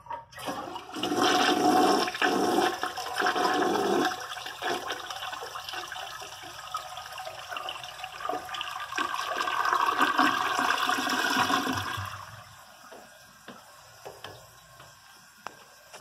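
1965 American Standard Cadet toilet flushing strongly, with water swirling down the bowl. A short click starts it, then a loud rush of water runs for about eleven seconds and drops to a quieter trickle near the end.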